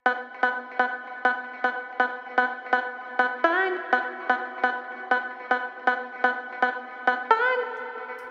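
A vocal sample played back from the HALion 6 sampler, filtered darker so that it comes across less as a voice and more as a rhythmic, pulsing tone, about three pulses a second. It holds one pitch, gliding up briefly about three and a half seconds in and again near the end.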